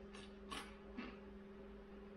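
Three faint, short creaking or rustling sounds about a third of a second apart, over a steady low hum.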